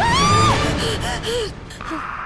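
A woman's high, frightened gasping cry right at the start, rising, held briefly and falling away within about half a second, followed by a few shorter cries over ominous background music.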